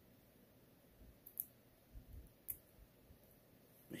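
Near silence with a few faint clicks of fingers working at a stainless steel watch bracelet's clasp, picking off its protective plastic film; the two sharpest come about a second and a half and two and a half seconds in.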